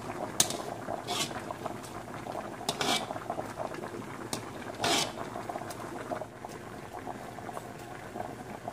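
Vinegar sauce simmering and bubbling in a wok, while a utensil scoops it up and pours it back over the fish, with several brief clinks and splashes, the loudest about three and five seconds in.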